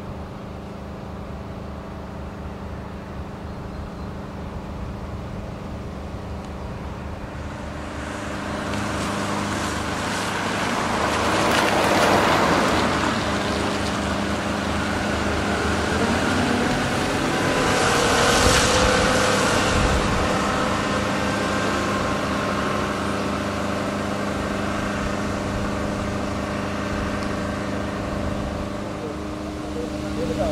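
Excavator's diesel engine running steadily, getting louder about eight seconds in, with two louder, noisier swells near twelve and eighteen seconds.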